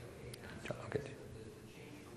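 Faint, low speech over room tone, with a quiet "okay" about a second in and a couple of sharp clicks just before it.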